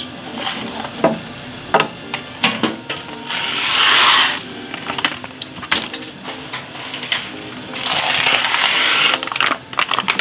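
Dry risotto rice poured into a wok of simmering seafood sauce: a hissing rush of falling grains in two pours, about three seconds in and again near eight seconds. Scattered light clicks and the bubbling of the sauce run underneath.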